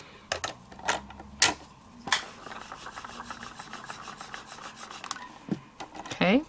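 A few light plastic clicks, then a fast run of light taps as a small ink pad is dabbed onto a clear rubber stamp to ink it, ending with a single knock near the end.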